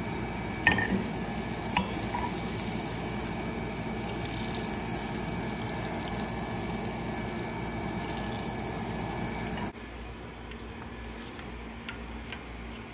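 Butter sizzling as it melts and foams in a hot nonstick frying pan: a steady hiss, with a couple of light clicks in the first two seconds. The sizzle cuts off suddenly nearly ten seconds in, followed by a single faint click.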